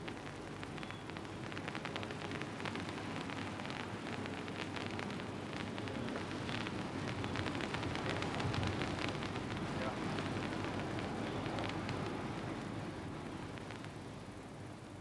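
Finely divided titanium metal burning fiercely in air: a dense crackling of sparks that builds to its loudest about eight or nine seconds in, then dies down.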